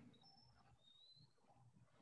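Near silence, with two faint, brief high-pitched tones: one early and one rising slightly about halfway through.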